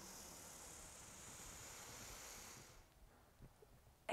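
A woman's slow, faint inhale through the nose, a deep Pilates breath drawn to widen the ribs. It is a soft hiss that stops about two and a half seconds in.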